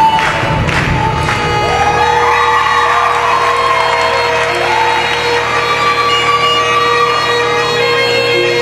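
Bagpipe music: a beat-driven passage gives way about a second and a half in to steady bagpipe drones, with the chanter playing a melody over them.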